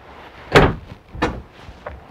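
Wooden closet doors being shut by hand: a sharp knock about half a second in, a second, softer knock a little under a second later, and a faint click near the end.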